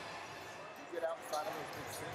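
Large-arena wrestling ambience: scattered distant voices and shouts, with a couple of short thuds from wrestlers on the mats about a second in and again shortly after.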